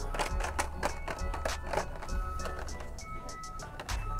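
Music playing at a moderate level, with short held melody notes over light clicking percussion.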